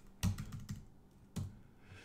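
A few keystrokes on a computer keyboard, sharp separate clicks at an uneven pace, as a new number is typed into a spreadsheet cell.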